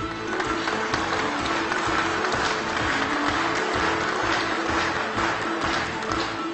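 Audience applauding steadily over music with sustained held notes while a state award is handed over.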